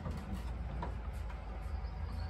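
A few faint knocks of young Nigerian dwarf goats' hooves on a slatted wooden floor, over a steady low rumble.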